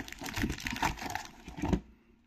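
Foil trading-card booster packs crinkling and rustling as they are handled and pulled out of a cardboard display box, in irregular bursts that stop shortly before the end.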